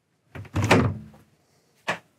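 Wooden sliding bedroom door in a motorhome sliding shut and closing against its frame with a thud, trailing off over about a second. A short sharp click follows near the end.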